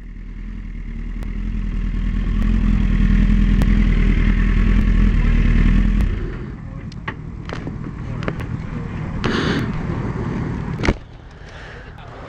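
Motorcycle engine running at low speed, building over the first few seconds and dropping away at about six seconds. After that, scattered clicks and a sharp knock near the end.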